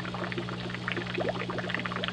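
Water trickling and splashing in a small, irregular patter over a steady low hum.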